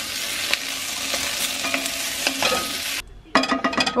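Sliced carrots and red onions sizzling in an enamelled cast-iron casserole on a gas hob, stirred with a wooden spoon, a steady frying hiss with small crackles. It cuts off suddenly about three seconds in.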